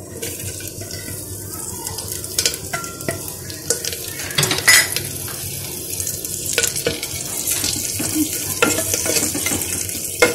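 Small shallots and curry leaves sizzling in hot oil in a clay pot, with sharp clinks and scrapes from the steel plate they are pushed off.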